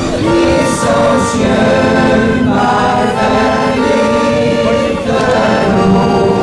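Amateur choir singing in harmony, several voices holding sustained notes and moving together from phrase to phrase.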